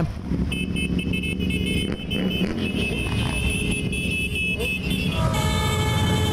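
Engines of a large column of motorcycles running as the column rides off at low speed. Steady high-pitched tones sound over the engine noise, with a fuller tone joining near the end.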